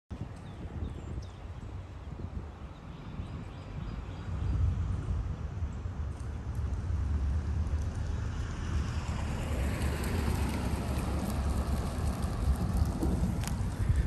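Outdoor ambience: a low wind rumble on the microphone that swells about four seconds in, with a broader hiss building toward the end.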